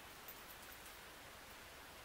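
Near silence: room tone with a faint, even hiss.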